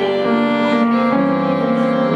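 Violin and piano playing a slow song melody. The violin holds long notes with vibrato over sustained piano chords, and the harmony shifts about a second in.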